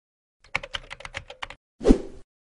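Keyboard typing sound effect: about ten quick clicking keystrokes in a little over a second, then a single louder thump near the end.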